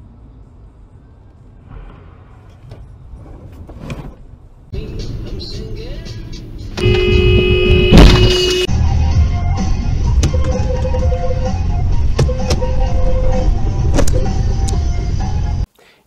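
Dashcam audio from inside a car in traffic: engine and road noise, then a car horn held for about two seconds in the middle, with a sharp bang near its end. Loud cabin noise follows, with short shifting tones over it.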